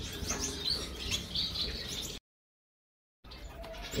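Small aviary birds chirping with repeated short high chirps, until the sound drops out completely for about a second just past halfway.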